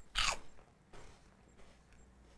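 A person biting into a crunchy cheese ball: one loud crunch just after the start, then fainter chewing about a second in.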